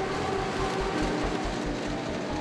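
Krone Big X forage harvester with an EasyCollect maize header working through standing maize: a steady mechanical drone and rumble of the machine cutting and taking in the stalks.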